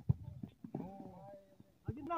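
Several dull thumps, the loudest right at the start, and a distant voice calling out about a second in.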